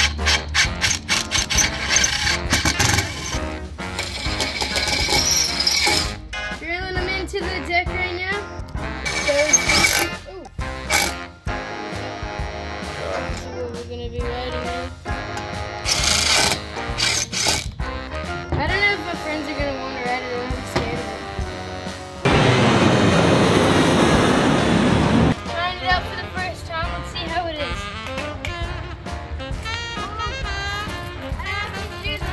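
Background music with singing, over which a cordless drill drives screws into a metal scooter deck in short runs. The loudest is a steady run of about three seconds about three-quarters of the way through.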